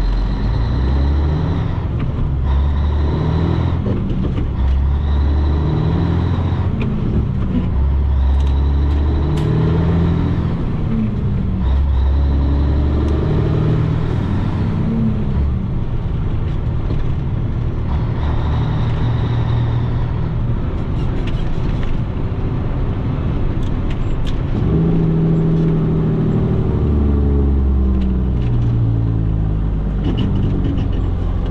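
A 1984 Peterbilt 362 cabover's diesel engine heard from inside the cab, working through a run of gear changes: its note rises and breaks off every couple of seconds, with a high whine that comes and goes with the load. In the middle it runs steadily for several seconds, and near the end it changes through the gears again.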